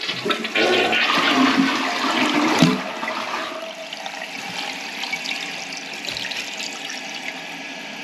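American Standard Edgemere two-piece toilet flushing: a loud rush of water down the bowl for about the first two and a half seconds, then the quieter, steady hiss of the tank refilling through its fill valve.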